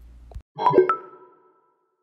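A short inserted sound effect: a quick run of bright, plinking pitched tones about half a second in, ringing briefly and fading within a second.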